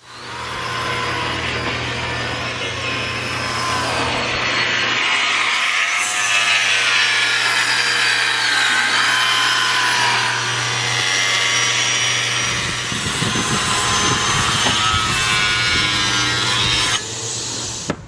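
Table saw ripping wooden planks: a steady motor hum under the loud noise of the blade cutting, its whine rising and falling as the wood is fed through.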